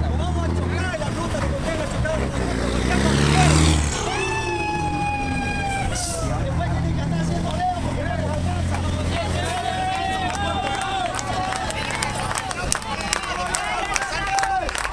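A heavy truck's diesel engine running, revving up to a peak about three and a half seconds in, then running on until it fades about ten seconds in, with a crowd's voices and shouts around it.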